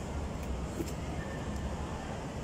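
Steady low rumble of road traffic, with a few faint clicks.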